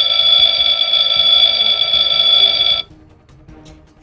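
Electronic alarm from a Fireman Sam toy fire station's mission-control console, a loud steady ringing tone that lasts about three seconds and then cuts off suddenly.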